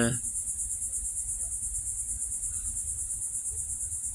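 A steady, high-pitched insect trill, pulsing quickly and evenly, over a low background rumble.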